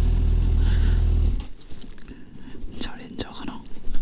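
Suzuki GSX-S750 inline-four idling, then switched off about a second and a half in; its steady low hum stops abruptly. Faint handling noises and soft breathy sounds follow.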